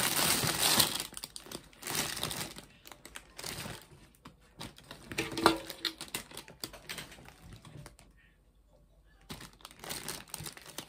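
Plastic wrapping crinkling and rustling in irregular bursts as someone rummages through a bucket of stuffed bears, settling to near quiet about eight seconds in.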